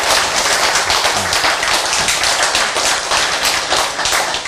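A room full of people clapping, many hands at once in a dense patter.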